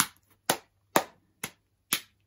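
One person clapping hands in a steady rhythm, about two claps a second, five claps in all.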